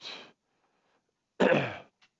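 A man clearing his throat once, a short rough burst about one and a half seconds in.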